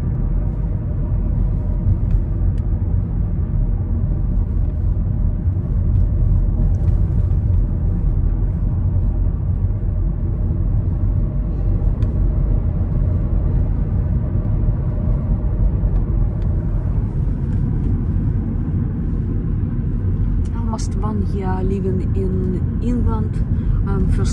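Steady low rumble of a car driving along a street, heard from inside the cabin: engine and tyre noise. Faint voices come in near the end.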